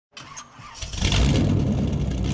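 Car engine sound effect: quiet at first, then the engine catches about a second in and runs with a steady low note.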